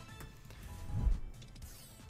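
Online slot game's music and sound effects: faint steady jingle tones with a low thump about a second in.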